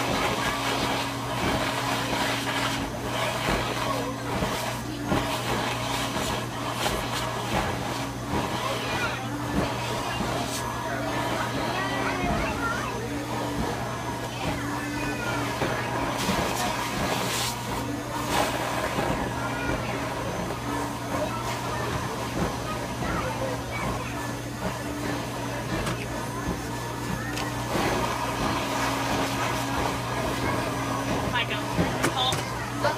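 A toy-stuffing machine's blower running with a steady hum as fibre fill is blown through the nozzle into a plush toy.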